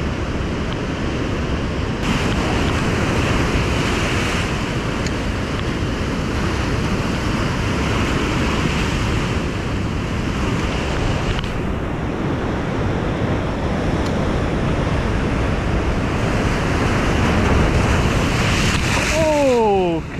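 Heavy surf breaking against a rocky shoreline: a constant loud rush of crashing waves and churning foam, with wind on the microphone. It swells louder near the end as a big wave surges up over the rocks and splashes the angler.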